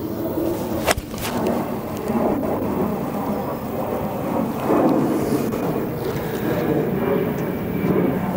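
A 52-degree golf wedge striking the ball once, a sharp click about a second in, over a steady low background noise.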